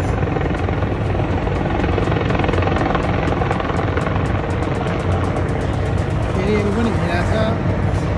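Helicopter in flight, its rotor blades chopping in a rapid, even beat over a loud low rumble. A man's voice comes in near the end.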